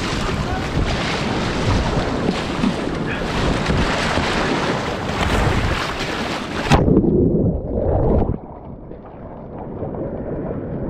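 Rushing whitewater and paddle splashes around a kayak running a rapid, with wind buffeting the microphone. About two-thirds of the way in, the sound suddenly goes muffled and dull as water washes over the camera, then clears a little near the end.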